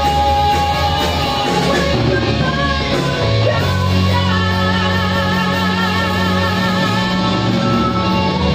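Live rock band playing: electric guitars, bass, drums and keyboard with a male singer on the microphone. In the second half a long note is held with a wavering vibrato.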